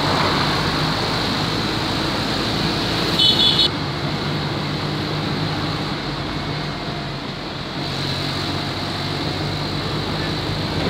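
Motorcycle engine running steadily under wind and road noise while riding along a street. A brief high-pitched beep sounds about three seconds in.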